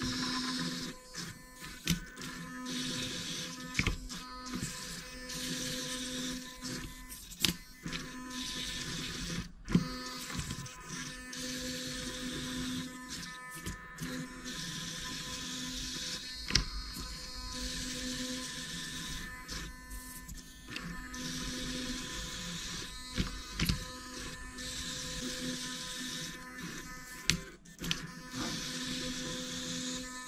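Small hobby servo motors of a robot arm whining in stretches of a second or two as the arm moves, stopping and starting, with a steady hum underneath and a few sharp clicks.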